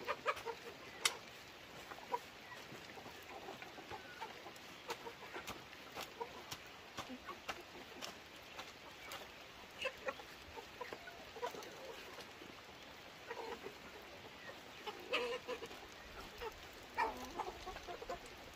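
Chickens clucking on and off, with more calls near the end. Under them, scattered short knocks and scrapes from a hoe being dragged through wet soil.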